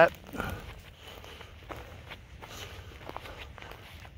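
Footsteps on dry oak leaf litter: a few soft, irregular crunching steps.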